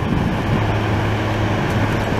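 Heavy diesel vehicles of a snow removal convoy running, a snowblower loading a dump truck, with a city bus drawing close: a steady low engine hum under a continuous rushing noise.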